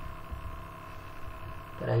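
Steady electrical hum with a faint high tone running through it, heard in a pause in the talk.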